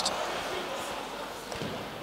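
Ice hockey rink ambience during live play: a steady haze of arena noise with one faint knock about a second and a half in.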